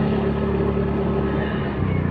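Engine of a moving road vehicle running steadily, heard from on board. Its pitch steps down near the end.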